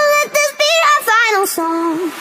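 Background music: a high sung voice with vibrato, a run of short notes with no accompaniment underneath.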